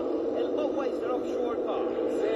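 Offshore racing powerboat's engines running at high speed, a steady drone, with a commentator's voice over it, heard thin and muffled as a replayed TV broadcast.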